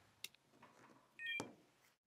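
Mostly near silence, broken about a second and a quarter in by a brief faint electronic chime ending in a sharp click, as the iPad 2 is connected by USB cable.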